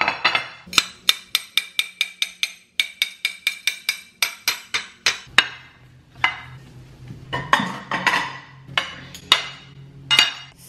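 A knife slicing a banana on a ceramic plate, the blade knocking against the plate about three times a second. Then a spatula scrapes scrambled eggs out of a frying pan onto plates, with clinks of utensil on pan and plate.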